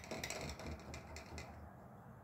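Faint, quick clicks and light rustling from handling a paintbrush and palette plate, dying away about one and a half seconds in.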